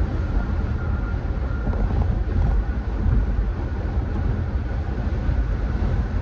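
Steady low rumble of road and engine noise heard from inside the cabin of a moving vehicle.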